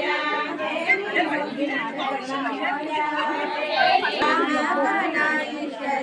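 Many women's voices at once, overlapping continuously, some notes held for a second or more.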